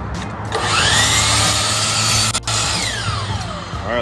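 A DeWalt miter saw spins up with a rising whine about half a second in and cuts a 25-degree miter through a piece of white molding. The trigger is then released, and the blade winds down in a long falling whine.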